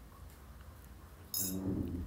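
A metal spoon clinks once against the cookware about a second and a half in, with a short ringing tail.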